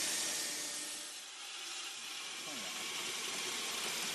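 Steady hissing noise of workshop machinery, with a faint voice a little past halfway.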